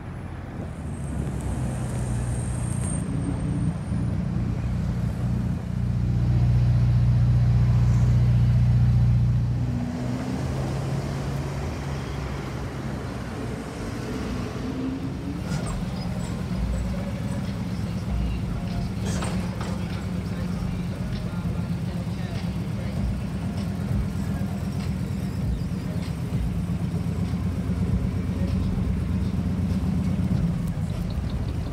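Car engines in street traffic. An engine sound builds and is loudest at about six to nine seconds, then cuts off abruptly. After that a classic American lowrider coupe's engine runs steadily at low revs with a low rumble as the car rolls slowly past.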